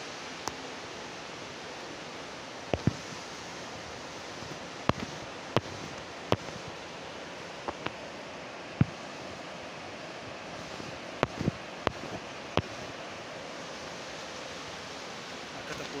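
River water rushing steadily over a rocky bed, with about a dozen short, sharp knocks and clicks scattered irregularly through it, louder than the water.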